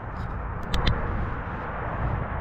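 Wind rumbling on the microphone, with two short faint clicks a little under a second in.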